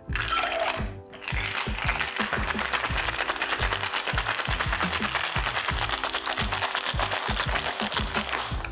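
Ice rattling inside a cobbler cocktail shaker being shaken hard, a fast steady clatter that starts about a second in and keeps going, with background music underneath.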